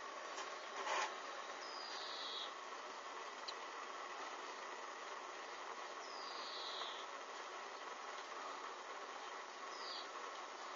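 Hanging strips of synthetic material burning with a small open flame: a steady hiss with a sharp crackle about a second in and a fainter one later. Two short falling whistles sound, one about two seconds in and one past the middle.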